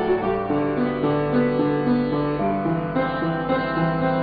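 Yamaha upright piano played solo: a melody of notes changing every fraction of a second over sustained lower notes, at an even level.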